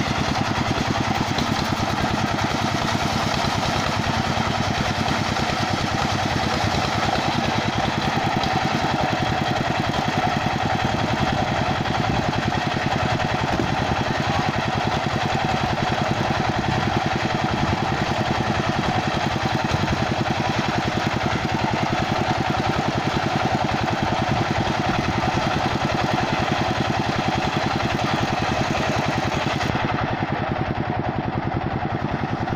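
Engine-driven portable circular sawmill (serkel) running steadily while it rips a kapok (randu) log into planks. The engine's fast, even beat and the blade in the cut blend into one continuous sound, a little stronger in its middle stretch.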